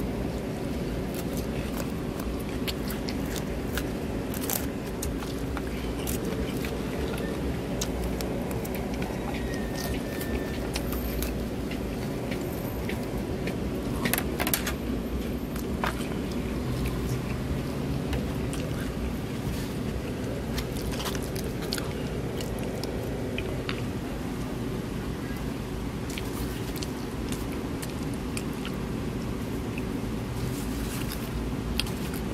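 A plastic fork clicking and scraping in a clear plastic salad bowl, with crunchy bites and chewing, over a steady low background rumble. The clicks are scattered, with a louder cluster about halfway through.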